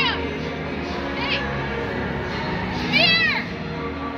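Children's high-pitched shrieks, each rising then falling: one just at the start, a short faint one a little after a second in, and the loudest about three seconds in, over steady background music.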